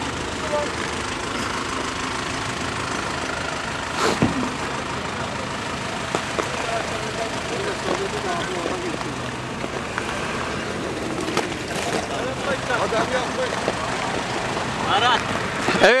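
Engines of off-road SUVs idling steadily, with a single knock about four seconds in.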